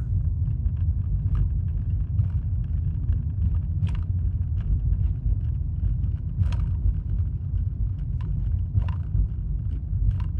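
Car cabin road noise while driving, a steady low rumble. Over it comes a sharp click every second or two at irregular intervals, from something loose in the car that has been tightened as far as it will go and still clicks.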